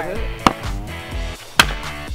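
Two axe strikes into a log on a chopping block, about a second apart, splitting firewood. Background music with a steady beat plays underneath.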